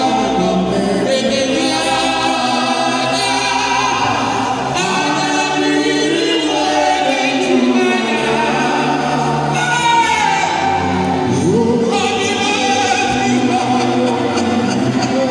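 Gospel music performed live: voices singing together like a choir over a steady instrumental accompaniment with held bass notes.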